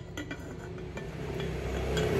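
Ceramic teapot lid set back onto its pot: a few light clinks of glazed ceramic on ceramic in the first half-second, then a few softer taps. A low rumble builds near the end.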